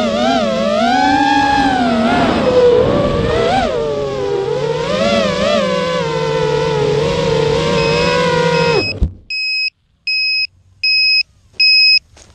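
Racing quadcopter's brushless motors whining, pitch rising and falling with the throttle, then cutting off suddenly about nine seconds in. An electronic beeper then sounds short high beeps about once a second.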